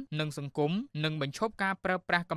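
Speech only: one voice talking steadily, with short pauses between phrases.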